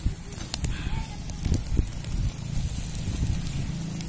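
Open wood fire crackling under chicken on a wire grill, with scattered sharp pops over a low steady rumble.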